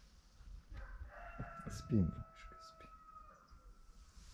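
A rooster crowing faintly: one long held crow of about two seconds, starting about a second in and dropping slightly at its end.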